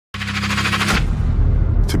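A rapid, even rattle like machine-gun fire, about fifteen clicks a second, over a low bass tone; it lasts about a second and cuts off suddenly, leaving a deep bass rumble. This is an edited intro sound effect.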